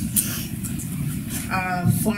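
A pause in speech over a steady low rumble, with a brief soft hiss just after the start. A woman's voice begins about one and a half seconds in.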